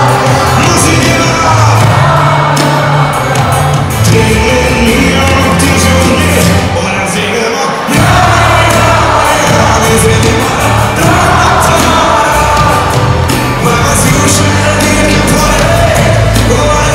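Live band music with a lead vocal, played loud over an arena PA. The bass drops out for a moment just before halfway and then comes back in.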